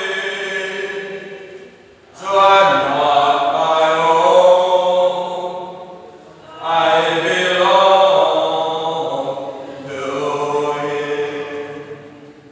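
Voices singing a slow hymn-like melody in long held phrases, each phrase swelling and then fading, with new phrases beginning about two, six and a half, and ten seconds in.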